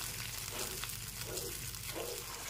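A thick mixture sizzling softly in hot oil in a nonstick pan, a steady frying hiss.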